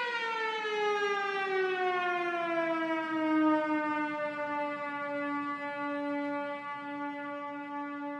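A single sustained electronic tone from a homemade GarageBand track, sliding steadily down in pitch over the first few seconds and then holding one note while it slowly fades.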